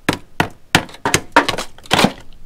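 Hammer blows chipping old, dried tar off a copper gutter flashing joint, a quick run of sharp knocks about three or four a second.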